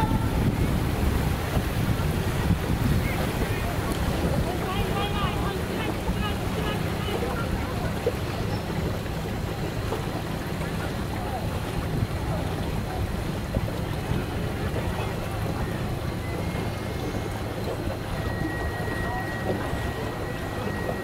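Boat engine running steadily, heard from aboard a boat moving along a river, with water rushing past and wind on the microphone.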